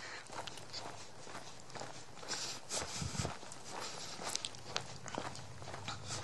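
A hiker's footsteps crunching along a dirt and gravel trail, a series of soft, irregular steps, with a brief low thump about halfway through.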